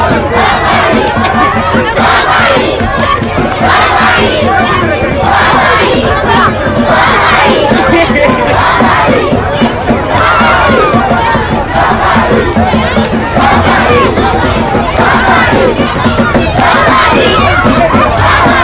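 A large crowd of people shouting together, loud and continuous, with many voices overlapping and no break.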